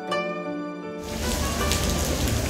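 Plucked-string music with harp-like notes that cuts off about a second in. It gives way to the steady hiss of heavy rain with a low rumble underneath.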